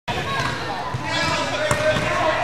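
Two basketball impacts, the louder one near the end, over children's chatter echoing around a gymnasium.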